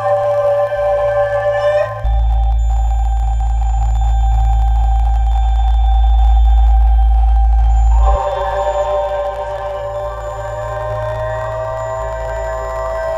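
Electronic music made of long sustained tones. A deep bass drone enters about two seconds in and stops about eight seconds in, after which the higher tones return and one rises slowly in pitch.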